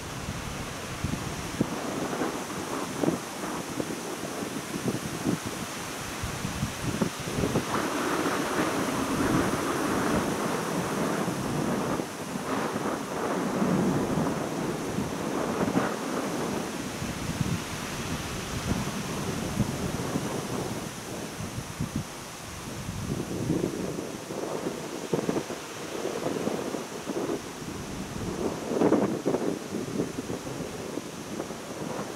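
Gusts of wind rustling the trees and buffeting the microphone, swelling and dying away every few seconds.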